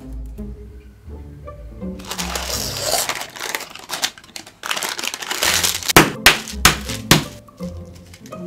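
Parchment paper crinkling for a few seconds, then about four sharp, loud cracks of brittle cinder toffee (honeycomb toffee) being smashed into shards. Music with a plucked bass plays underneath.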